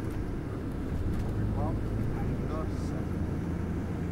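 Steady low rumble of a tour bus's engine and road noise heard from inside the moving bus, with faint snatches of voices.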